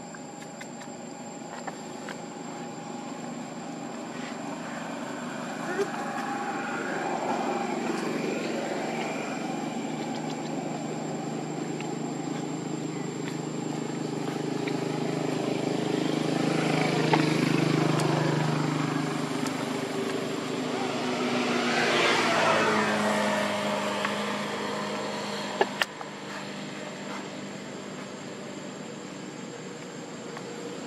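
An engine hums, its pitch drifting slowly as it grows louder toward the middle, then settles into a steadier, quieter hum. Two sharp clicks come near the end.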